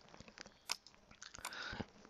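Two faint, sharp computer-mouse clicks, about a second in and again near the end, with a few softer ticks between.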